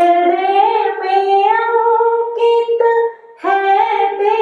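A woman singing into a handheld microphone, holding long drawn-out notes, with a brief breath about three seconds in before she sings on.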